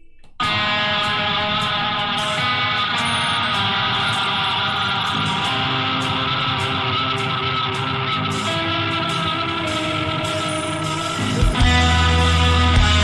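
Instrumental hard rock song intro led by guitar, starting abruptly about half a second in. A heavy low end comes in near the end and makes it louder.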